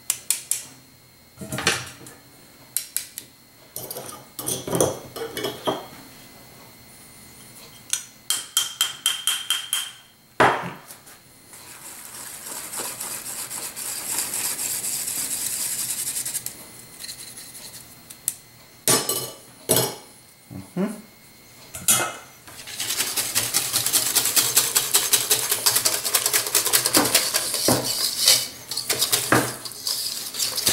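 Small wire-mesh sifter of flour tapped against a metal mixing bowl in sharp clicks, with a stretch of a spoon scraping flour through the mesh. In the last several seconds a wire whisk beats the batter in the bowl, ticking fast against its sides.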